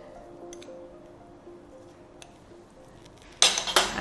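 Soft background music with a few faint clinks of a metal spoon against a small glass dish as seasoning is sprinkled into a saucepan. A sudden louder noise comes near the end.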